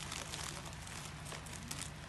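Bubble wrap and plastic packaging crinkling softly as hands move through it, a string of small irregular crackles.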